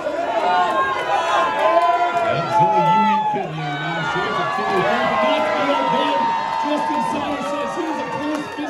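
Live wrestling crowd shouting and yelling, many voices overlapping at once.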